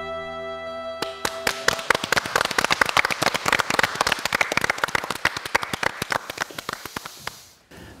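The backing music's last held chord dies away, and about a second in a small group starts clapping. The applause runs for some six seconds, thins out and stops shortly before the end.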